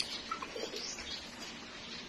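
Faint, brief bird calls.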